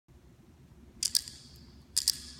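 Hand drum beaten in a doubled heartbeat rhythm: a quick pair of sharp, clicky strikes about a second in, and the first strike of the next pair at the end.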